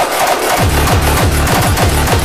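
Frenchcore hardcore electronic music: a fast, heavily distorted kick drum beating several times a second, each kick falling in pitch, under a dense layer of synth and percussion.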